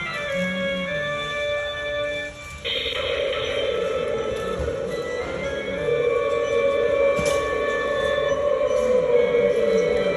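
Built-in Halloween sound effect of a battery-powered pumpkin string lights set, playing from its small speaker after the Try Me button is pressed: an electronic tune of held, changing notes that turns fuller and louder about two and a half seconds in.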